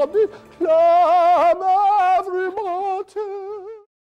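A loud sung voice warbling with a wide, fast vibrato, leaping back and forth between a low and a high note in short phrases, and cutting off abruptly just before the end.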